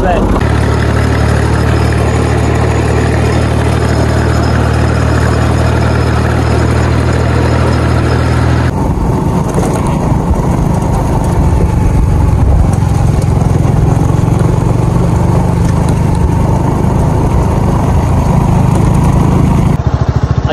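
An engine running steadily at constant speed. About nine seconds in, after a cut, a motorcycle is heard being ridden along a dirt track, its engine running under a rushing noise.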